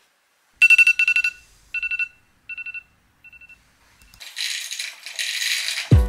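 A rapid metallic ringing jingle, a fast run of clicks carrying two steady high tones, that repeats about a second in and then three more times, each fainter, like an echo. It is followed by a soft rushing hiss over the last two seconds.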